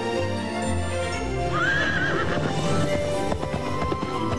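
A horse whinnies once, a short wavering call about one and a half seconds in, over steady background music, with a quick patter of clicks like hoofbeats near the end.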